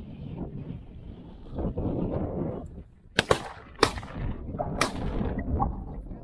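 A volley of shotgun shots spread over about two seconds: two close together, another about half a second later, and a last one a second after that. They are shots at quail flushed by the dogs, and one bird is hit. Under them is a low rumble of wind and movement through brush.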